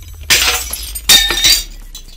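Glass-shattering sound effect in a logo intro: two crashes a little under a second apart, the second with a ringing high tone, over a low steady drone.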